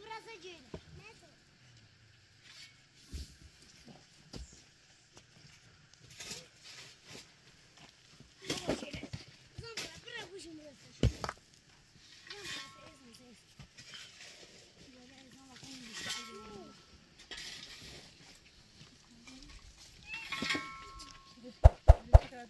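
Goats bleating now and then, with a few sharp knocks of stones being set down.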